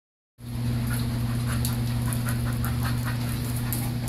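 Dogs, a standard poodle and a German shepherd, wrestling in play on a hard vinyl floor: short irregular scuffles and clicks over a steady low hum.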